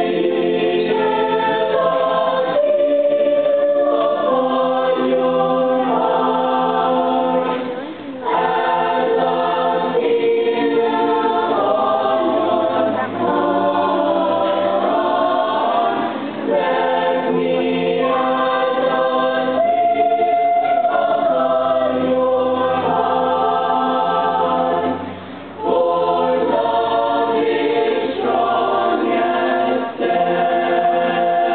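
Mixed choir of young voices singing unaccompanied in held, slowly moving chords, with brief breaks for breath about eight seconds in and again near twenty-five seconds.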